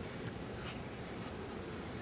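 Low, steady room noise in a pause between spoken phrases, with a few faint, brief rustles.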